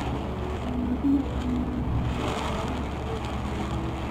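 Steady engine drone and tyre noise from inside a vehicle driving on a wet road.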